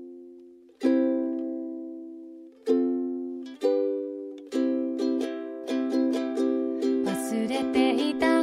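Song intro on ukulele: a few slow chords each left to ring out, then strumming picks up into a steady rhythm about halfway through, with more instruments joining near the end.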